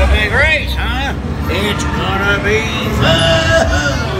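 Recorded voice of the Mater animatronic talking, with wide swoops in pitch, over the steady low rumble of the ride vehicle.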